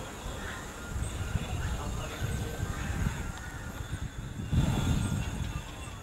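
Soundtrack of an outdoor riverside field video played back over a video call: wind rumbling and gusting on the camera microphone, with a steady thin high whine and a few faint wavering high sounds above it.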